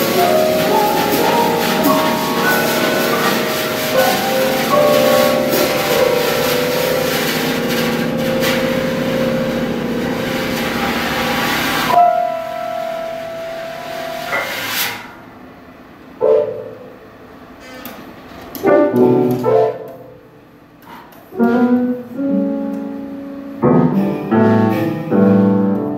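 Free improvisation on drum kit and upright piano: cymbals and drums wash under many sustained piano notes. About halfway through, the drums stop abruptly, leaving a held note and then sparse, separate piano chords with pauses between them.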